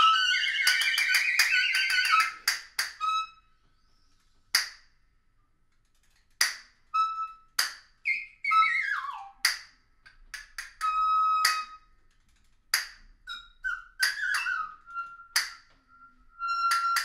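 Free-improvised woodwind trio playing: a dense tangle of overlapping high reed tones for the first couple of seconds, then sparse short squeaks and whistle-like notes with near-silent gaps between them, some sliding down in pitch and a few held briefly.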